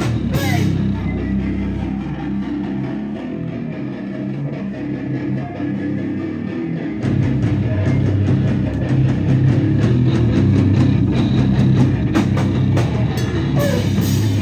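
Live heavy rock band with electric guitar and drum kit. For the first half the guitar carries on with little drumming. About seven seconds in, the full band with drums comes back in, louder.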